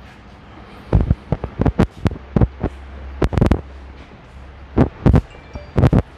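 An irregular run of sharp thumps and knocks, some single and some in quick clusters, over a faint low hum that stops about halfway through.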